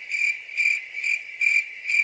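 Stock cricket-chirping sound effect, the 'awkward silence' gag: a steady high trill that swells about twice a second.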